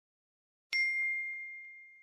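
Notification-bell ding sound effect: one bright strike about two-thirds of a second in, ringing on as a single high tone that slowly fades.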